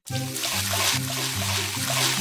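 Soda pouring and fizzing into a large glass jar, a steady hiss, over background music with a bass line stepping between notes.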